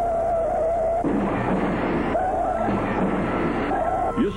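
Cartoon soundtrack music under the taxi's dash: a wavering high note sounds three times over a dense, noisy backing.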